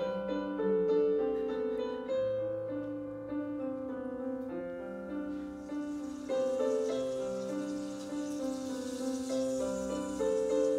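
Piano music playing slow, held chords, with the notes changing about once a second.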